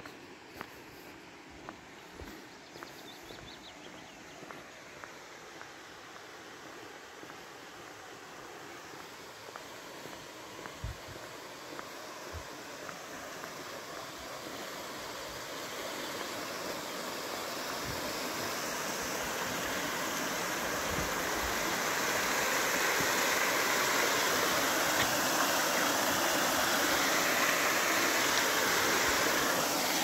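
A mountain stream of snowmelt water rushing over rocks and a small concrete cascade, a steady rush that grows louder as it is approached and then holds. Light footsteps on the road are heard in the first few seconds.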